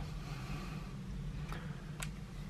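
Quiet room tone with a steady low hum and a faint tap about one and a half seconds in.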